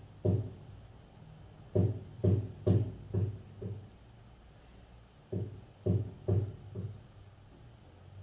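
A run of dull, low knocks, about two a second, in two groups with a short pause between them.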